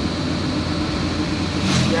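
Steady engine and road noise of a moving vehicle, heard on board while it drives along a smooth asphalt road.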